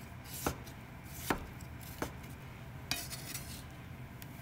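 Kitchen knife cutting daikon radish into thin strips on a wooden cutting board: three sharp, separate chops in the first half, then a brief scrape of the blade over the board near the end.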